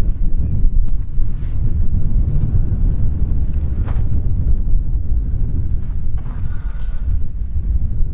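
Strong wind buffeting the microphone: a loud, gusty low rumble throughout, with one faint click about four seconds in.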